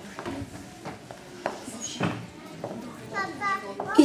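Faint, indistinct children's voices, with a few short knocks, perhaps from handling on stage, and a brief high child's voice near the end.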